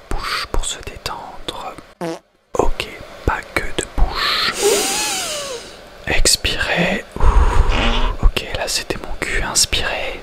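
Whispering right into a studio microphone, ASMR-style, with many small mouth clicks and breaths and a brief pause about two seconds in. A low rumbling burst comes about seven seconds in.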